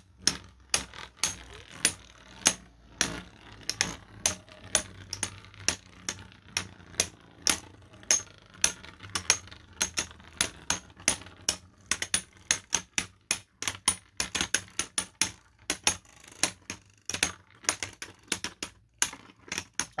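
Two 3D-printed Beyblade spinning tops knocking against each other as they spin in a plastic stadium: a rapid, irregular run of sharp plastic clicks, several a second, that come thicker and faster in the second half.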